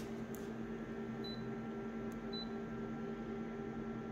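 Steady electrical hum of an office multifunction copier standing ready, with two faint, short, high beeps about a second apart and a light handling click near the start.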